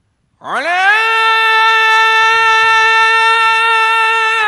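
A man chanting Quran recitation in a melodic style through a microphone: his voice enters about half a second in with an upward swoop, then holds one long, steady note.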